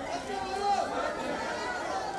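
A crowd of people talking over one another: many overlapping voices, with no single clear speaker.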